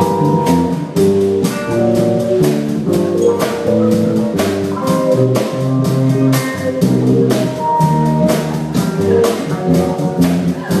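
Live blues band playing an instrumental intro: electric guitar over upright double bass and drum kit, with a steady driving beat and no singing.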